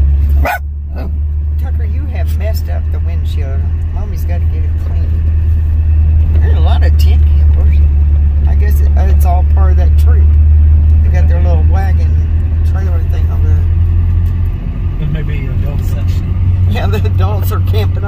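Steady low rumble of a car's engine and tyres heard inside the cabin as it rolls slowly along a gravel road, with quiet voices at times.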